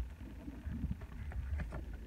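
Low steady hum with a few faint soft clicks and rustles of trading cards in plastic sleeves being handled.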